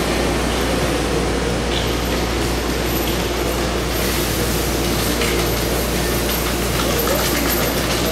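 BART train standing at an underground platform with its doors open, its onboard equipment running with a steady hum under the station's noise, and a thin high whine that gets stronger about halfway through.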